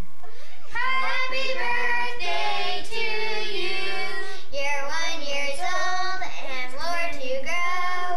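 Children singing a tune in a run of held notes.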